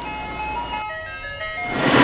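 Short electronic jingle of clear, pure tones: one held note, then a quick run of notes stepping upward in pitch.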